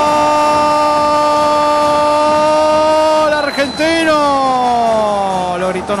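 Spanish-language football commentator's long drawn-out goal cry, held loud on one note for about three seconds. It then breaks and trails off in a long falling pitch.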